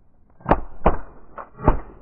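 Several shotguns firing in a quick volley: four shots in a little over a second, the third fainter than the others.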